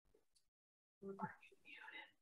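Near silence for about a second, then a faint whispered voice.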